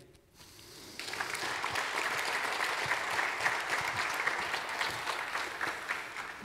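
Audience applauding, swelling about a second in and then holding steady.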